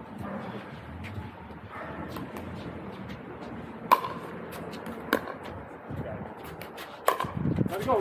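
Paddles striking a plastic pickleball in a rally: a string of sharp pops, the first and loudest about four seconds in, the rest following about half a second to a second apart. Men's voices come in near the end.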